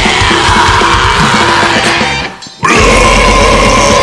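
Deathcore song playing loud, with a man's harsh screamed vocals over it. The music drops out for a moment just past the middle, then comes back in with a long held note.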